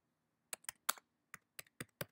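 Computer keyboard being typed on: about seven separate keystrokes, starting about half a second in, as a short word is entered.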